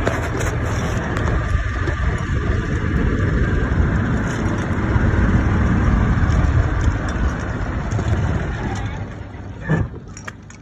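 Golf cart driving, with wind rushing over the microphone; a short knock sounds near the end.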